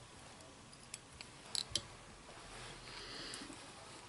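Faint, small clicks and a soft brushing sound from fly-tying tools and thread being handled at the vise while the hackle is tied off, with a cluster of clicks about a second and a half in.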